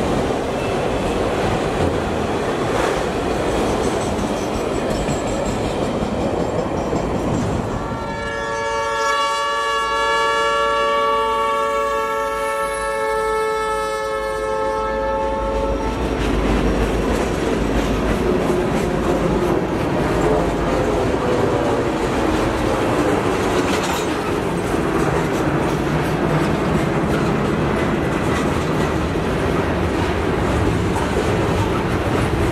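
Freight cars rolling past at close range, a steady rumble with wheels clattering on the rails. About eight seconds in, a locomotive air horn sounds one long blast of several notes at once, held for about seven seconds.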